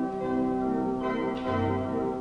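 Church bells ringing, one stroke after another, each bell ringing on under the next.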